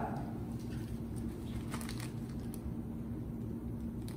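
Clear plastic C-arm bonnet crinkling softly as it is handled, with a few faint clicks about halfway through, over a steady low hum.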